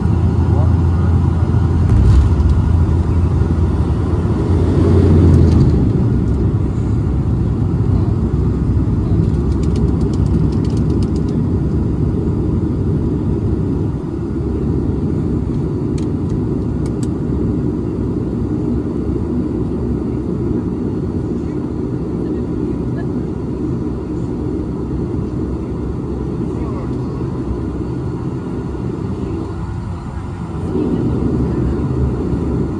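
Cabin noise of a Bombardier Dash 8-Q400 turboprop rolling along the runway after landing: a loud, low drone from the engines and propellers that swells for the first several seconds, about five seconds in, then settles to a steadier, slightly quieter drone as the aircraft slows. A few faint clicks come through midway.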